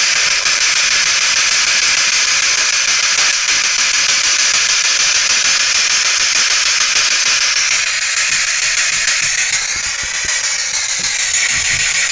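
Ghost box (spirit box) scanning through radio frequencies: steady, loud static hiss, with faint wavering tones rising and falling through it about two-thirds of the way in.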